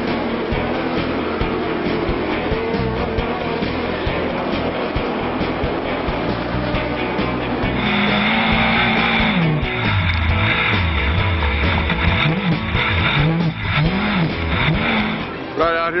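Pro Lite short-course race trucks racing on a dirt track, mixed with music. About halfway in, an onboard recording of one truck's engine revving up and down again and again, roughly once a second, over a loud hiss.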